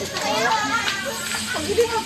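Speech: people talking and calling out close to the microphone.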